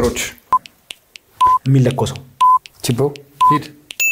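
Countdown timer beeping once a second, four short beeps of one pitch, with men talking between them.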